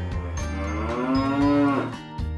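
One long pitched call, rising slightly and then falling away, lasting about a second and a half, over background music.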